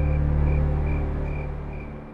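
Background music from the drama's score: a low held drone with a soft high note repeating about twice a second, fading out near the end.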